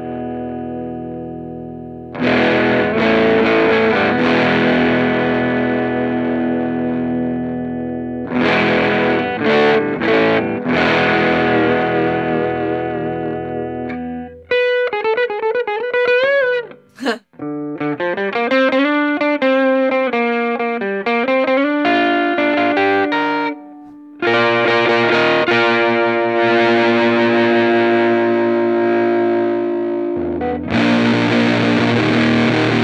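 Music Man Stingray RS electric guitar played through effects pedals: strummed chords left to ring, then a run of single notes with wavering pitch around the middle, then ringing chords again near the end.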